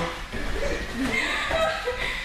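Indistinct chatter of several voices with some chuckling and laughter, no clear words.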